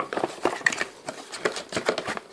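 A cardboard retail box being handled and its end flap pulled open: a quick string of small scrapes, taps and rustles of card.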